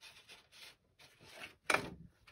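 A sheet of watercolour sketch paper being handled and moved across the table: a series of soft rustles, with a louder rustle near the end.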